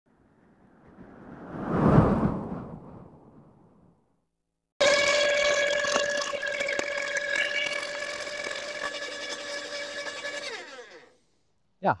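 A rising and falling whoosh over the first few seconds, then a Makita UD2500 electric garden shredder chopping branches as they are fed in: a loud, steady whine with several fixed tones and a few sharp cracks of wood, fading out about eleven seconds in.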